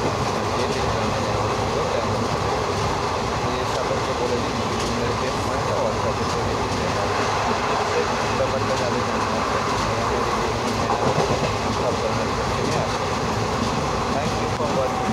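Steady background rumble and hiss, even in level throughout, with no clear speech.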